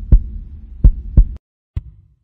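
Heartbeat sound effect: deep paired thumps over a low hum, stopping about a second and a half in.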